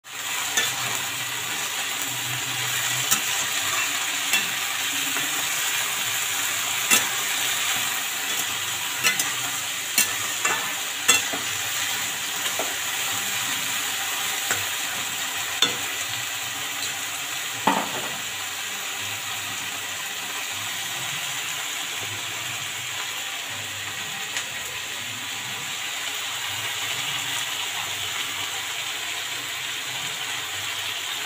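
Cut green beans and potato pieces sizzling steadily in oil in a steel kadai. A metal spatula clinks and scrapes against the pan as they are stirred, with sharp ticks scattered through the first half and one ringing knock a little past halfway; after that only the sizzling goes on.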